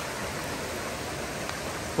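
A rain-swollen stream rushing over rocks: a steady wash of running water, high and strong after a day of rain.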